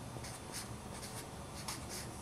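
Felt-tip marker writing on paper: several short, faint strokes as a number is written.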